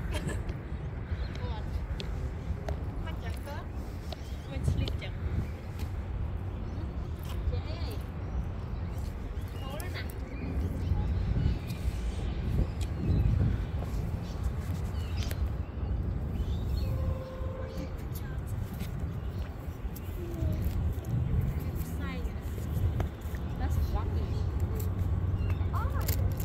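Open-air ambience: a continuous low rumble with faint voices of people talking.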